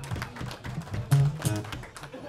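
Two acoustic guitars strumming a few short chords as a song ends.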